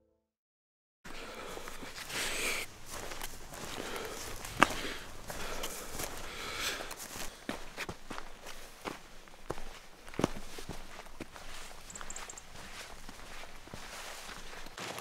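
Footsteps of a walker on a dry grassy, stony mountain path, with clothing and carried gear rustling, starting about a second in. A single sharp click about four and a half seconds in is the loudest moment.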